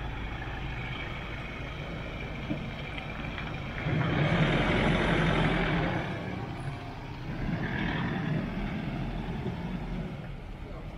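Ford Ranger Raptor pickup driving slowly by at low speed, its engine and tyres on asphalt going steadily. It gets louder as it passes close about four seconds in, fades, then swells again near the end as it pulls away.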